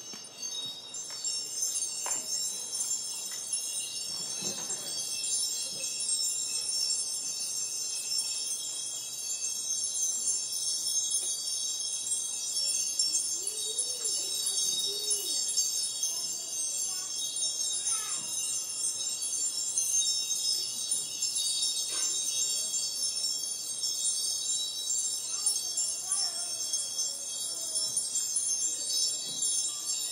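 Chimes ringing continuously: many high tones held and overlapping in a steady, shimmering wash.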